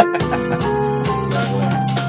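Jazz combo music: grand piano chords held and changing over bass and drums, with a brief laugh at the very start.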